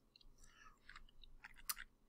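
Near silence: room tone, with a couple of faint short clicks near the end.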